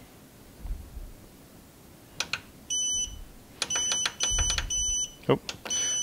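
Growatt SPF5000ES inverter/charger keypad beeping as its buttons are pressed. A couple of clicks come first, then from about halfway in a quick run of about five short, high beeps as the output-voltage setting is stepped down.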